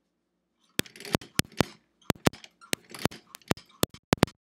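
Sewing machine stitching slowly, each stitch a sharp click. The clicks start about a second in, irregular at first, and quicken to several a second near the end.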